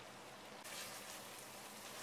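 Faint sizzling and bubbling of goat meat frying in a thick yogurt masala in a cast iron pot, a little louder from about half a second in.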